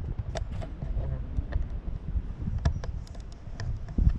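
Wind rumbling on a handheld 360 camera's microphones, with a few sharp clicks.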